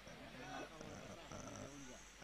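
Faint, distant men's voices calling out in a few short shouts.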